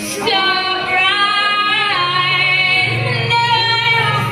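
A woman singing live through a microphone and PA, holding long notes with small slides between them, with electric guitar accompaniment; a low sustained note comes in under her about two seconds in.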